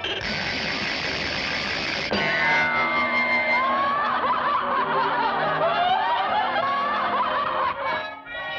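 Cartoon soundtrack: a dense crash of orchestra and sound effects over the first two seconds as a weighing scale bursts apart. A held high note with a falling run of notes follows, then a busy, wavering passage that lasts until it cuts off at the fade.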